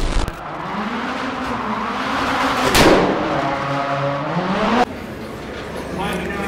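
Rallycross race car engine revving in a tunnel, its pitch climbing and falling, with one loud sharp crack about three seconds in. The engine sound cuts off suddenly near five seconds, leaving quieter background.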